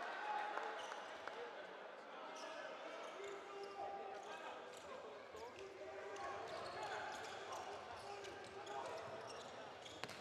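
Handball being bounced on an indoor sports-hall floor during play, with players and spectators calling out.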